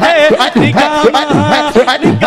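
Male voice singing a Sufi devotional kalam in Punjabi, with a steady rhythmic backing of chanted vocal syllables about twice a second.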